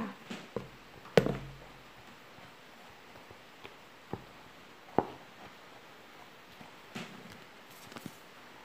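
A few separate light knocks and taps with quiet gaps between, the sharpest about a second in, from hands handling and pressing a glued felt-and-paper-board piece against a tabletop.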